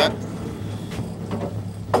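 Houseboat motor running with a steady low hum, with a few faint knocks.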